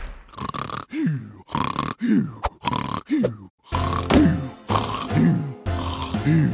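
Voiced cartoon snoring: a run of short snores about once a second, each a groan falling in pitch. Soft background music comes in about halfway through.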